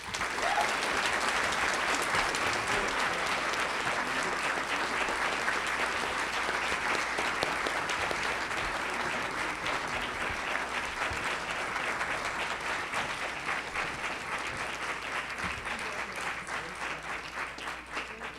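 Audience applauding, starting all at once and thinning into scattered claps near the end.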